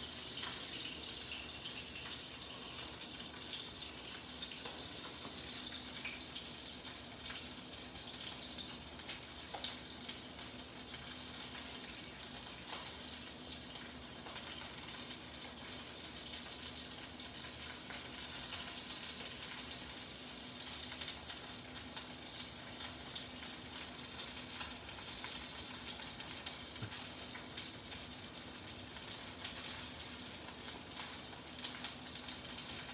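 Salmon fillet searing skin side down in olive oil in a frying pan: a steady sizzle with fine crackling, over a faint low hum.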